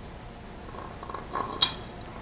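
Light handling of a steel bolt and washer being fitted into a kayak motor mount block, then a single sharp click about one and a half seconds in as the bolt seats.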